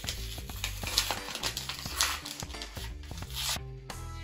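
Plastic-wrapped pack of photocards being torn open and handled, with irregular crackles and rustles over a quiet background music bed.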